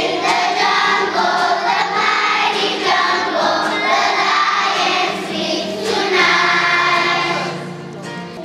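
A group of young children singing a song together, in phrases of a few seconds each.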